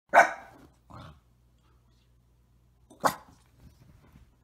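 A small white curly-coated dog barking: a loud bark right at the start, a softer one about a second in, and another loud bark about three seconds in.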